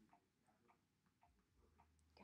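Near silence, with a few faint ticks of a stylus tapping a tablet's glass screen as a word is handwritten.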